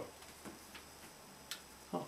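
A quiet pause with room tone, a few faint ticks and one sharp click about one and a half seconds in.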